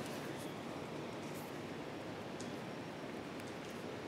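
Quiet room hiss with faint rustles and a few small ticks of fingers rubbing a small rubber O-ring, working a bit of molding flash off it.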